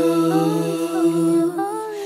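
Wordless a cappella vocal music: voices hum a held chord over a steady low note, and the upper parts glide and shift.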